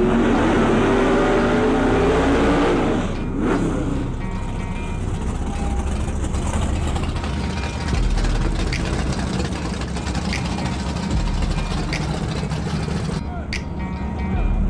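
Drag-racing cars' engines at full throttle running down the strip for about three seconds, their pitch sliding down as they pull away. After a sudden cut, a quieter, steady low engine rumble with crowd chatter.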